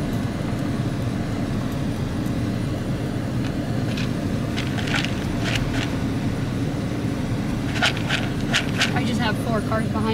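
Steady low rumble of a car creeping along, heard from inside the cabin. A scatter of sharp clicks comes about halfway through and again near the end.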